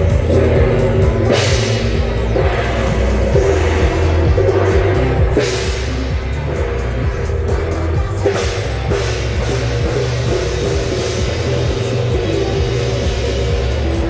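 Loud amplified procession music with a heavy, pulsing bass, over which a handheld gong is struck with a bright crash a little over a second in, again around five and a half seconds, and several times after about eight seconds.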